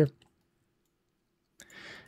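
A quiet stretch with a faint steady hum, then a few short clicks from a computer mouse or keys about three-quarters of the way through.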